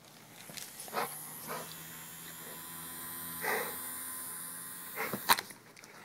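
Pit bull making a low, steady growl-like sound for several seconds, with a louder short vocal sound about three and a half seconds in and a couple of sharp knocks near the end.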